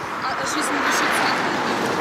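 A minibus passing close by on the road, a steady rush of tyre and engine noise that swells toward the middle.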